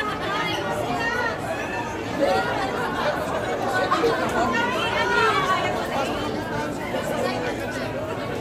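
Overlapping chatter of several people talking at once, steady throughout, with no single clear voice.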